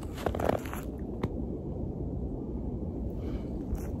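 Handling noise and light crunching in snow as a handheld phone camera is moved: a few rustling crunches in the first second, one sharp click about a second in, then a steady low rumble.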